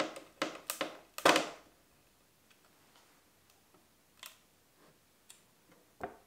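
Small screws being driven into a brass hinge on a plywood cabinet with a hand screwdriver: a few sharp clicks in the first second, then a louder knock, followed by faint scattered ticks.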